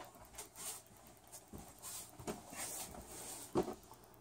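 Footsteps on a wooden floor with light rustling, a few soft irregular steps, and one louder bump near the end.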